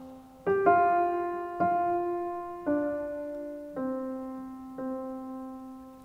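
Blüthner grand piano playing a slow, falling line of single notes, about one a second, each left to ring and fade, stepping down to end on middle C struck twice. It is the theme sinking back to middle C, the note that stands for the veil in the piece.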